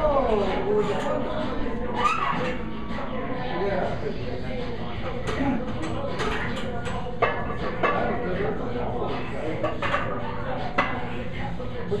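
Gym ambience: background music and distant voices, with a few sharp metallic clanks of weights, the loudest about seven, eight and eleven seconds in.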